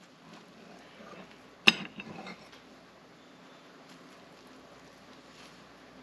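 A metal fork clicks once sharply against a plate about two seconds in while cutting through a stack of pancakes, followed by a few soft scrapes.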